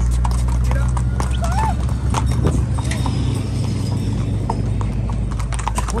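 Hooves of several ridden horses walking, an uneven clip-clop of many quick hoof strikes on hard ground, over a low steady hum.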